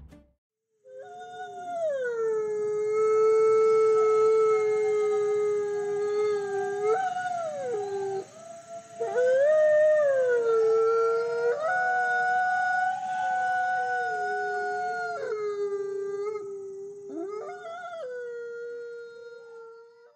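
Long drawn-out animal howls, one after another and sometimes two at once, each rising at the start, held, then sliding down in pitch.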